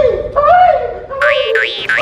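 Cartoon 'boing' spring sound effects, a quick run of about four in a row in the second half, over a wavering held note.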